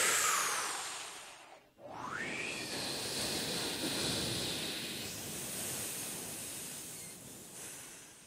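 Wind sound effect of a snowstorm blowing in gusts. A first gust dies away with a falling pitch a couple of seconds in. A second gust rises in pitch, then blows steadily and fades near the end.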